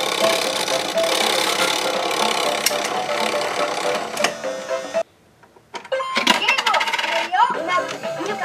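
Electronic toy tune from an Anpanman toy crane game, with a whirring haze under it as the claw moves. It cuts out suddenly about five seconds in, then comes back with clicks and a voice.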